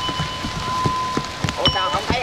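A small bell rings with a long sustained tone and is struck again near the end, over the irregular patter of rain.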